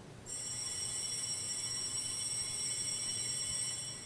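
Bell ringing with several steady high, bright tones. It starts just after the commentator's introduction and holds evenly for over three seconds before dying away near the end, marking the start of the Mass.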